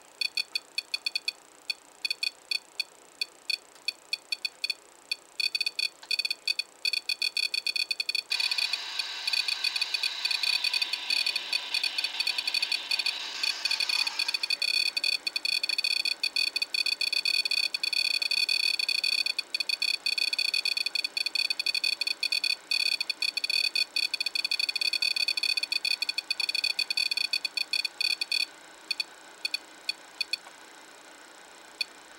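REM-POD paranormal detector sounding its electronic alarm: a rapid, high-pitched chattering of beeps. It comes in scattered bursts at first, runs almost without a break from about a third of the way in, and stops just before the end. The alarm is the device's signal that something has disturbed the field around its antenna.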